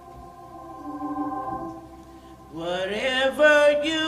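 Church organ holding soft, steady chords, then about two and a half seconds in a woman's voice comes in singing with vibrato, sliding up into the opening of a gospel song.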